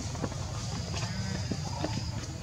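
Outdoor background: a steady low rumble with a thin high-pitched whine that fades in and out, and a few faint scattered clicks.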